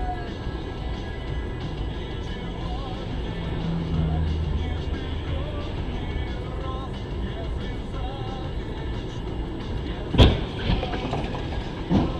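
Car interior noise with a steady low engine hum, then one sharp, loud knock about ten seconds in, followed by a few smaller knocks: a low-speed collision with a car cutting across in front.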